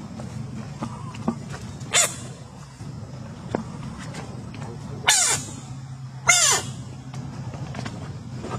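Three short, loud animal calls, each falling sharply in pitch: a lighter one about two seconds in, then two louder ones near five and six seconds, over a steady low hum.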